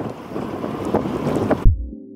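Wind on the microphone and sea water on a boat, with a faint tap or two. About one and a half seconds in, this cuts off abruptly and electronic music with a heavy kick-drum beat begins.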